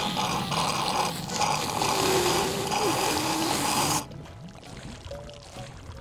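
Cartoon sound effect of a sponge sucking water up through a drinking straw: a loud, rushing slurp that cuts off suddenly about four seconds in. Background music plays under it.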